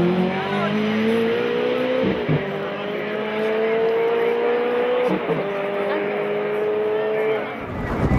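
Ferrari V8 sports car's engine accelerating hard up a hill-climb course, its pitch rising through the gears with two upshifts, about two and five seconds in. The sound fades slightly near the end as the car pulls away.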